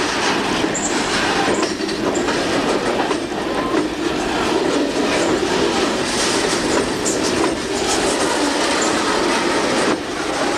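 Freight train rolling across a steel girder bridge: a steady rumble of wheels with clickety-clack over the rail joints and a few brief high wheel squeals.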